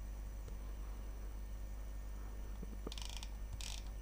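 Quiet room tone with a steady low hum, then a few faint clicks and short rattling bursts in the last second from a computer mouse's scroll wheel being turned.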